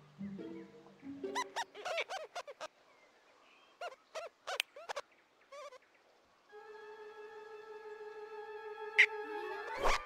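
Quick, squeaky chirping giggles from cartoon rodents, in several short runs. These give way about two-thirds of the way in to a held orchestral chord that grows and sweeps upward at the very end.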